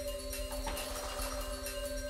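Background music with steady held tones and a light regular pulse.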